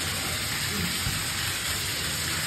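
A steady, loud rushing hiss with no distinct events in it.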